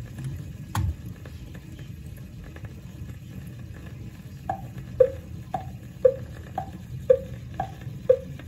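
BSR console record changer's tonearm setting down on a 45 with a click near the start, then the crackle and low rumble of the stylus running in the record's lead-in groove. Faint pitched ticks about twice a second come in from about halfway, before the music starts.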